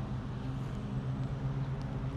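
Steady hum of road traffic, a low drone under a haze of noise.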